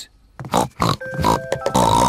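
Short cartoon pig grunts from the animated characters, then a children's cartoon music cue of held notes starting about a second in.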